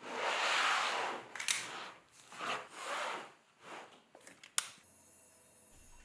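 Handling sounds of a wooden ware board of leather-hard clay bowls being moved: a rustle at the start, then a series of soft scrapes and knocks, with a sharp click about four and a half seconds in.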